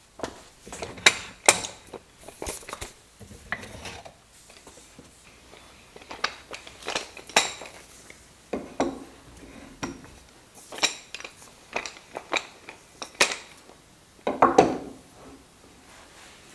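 Wood and tools being handled on a wooden workbench: irregular sharp knocks and clinks in scattered clusters, a thick plank shifted and a wooden handscrew clamp set in place. The loudest knocks come about a second in and near the end.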